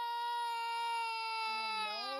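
A young girl's long crying wail, held almost on one pitch and sagging slightly near the end. She is crying from ear pain that started suddenly, which her mother suspects is a returning ear infection.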